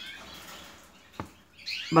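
Canaries chirping faintly in short, high, sliding notes near the start and again near the end, with a single sharp click a little past halfway.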